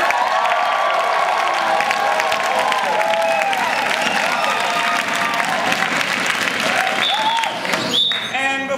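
Theatre audience applauding and cheering, voices calling out over dense steady clapping.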